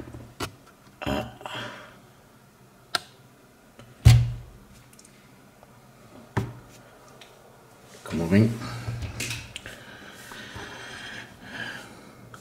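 Hard objects knocking on a desk: a few sharp clicks and one heavier thump about four seconds in. A short stretch of voice follows later on.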